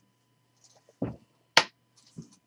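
A dull thump about a second in, then a sharp snap half a second later, the louder of the two: handling noises at a desk, over a faint steady hum.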